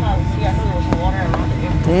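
Jet airliner cabin noise during the landing rollout on the runway: a steady low rumble from the engines and the wheels, with a steady whining tone above it and faint voices in the cabin.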